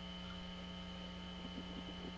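Steady electrical mains hum in the recording, a constant low buzz with a thin high whine above it, and a few faint ticks near the end.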